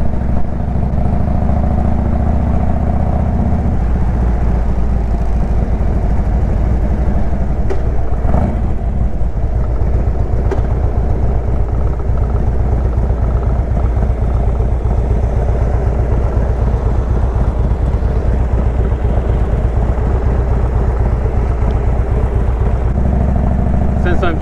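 Harley-Davidson Road King Classic's V-twin engine running steadily under way, heard from on the bike. The engine note shifts about four seconds in.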